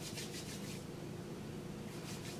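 Quick, rhythmic rubbing, about seven strokes a second, fading out under a second in; it is faint, hand-handling noise from rubbing a small plastic bottle or skin.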